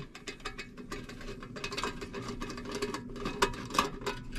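Quarter-inch nut driver backing small screws out of a sheet-metal plate: a steady run of rapid small metallic clicks and ticks.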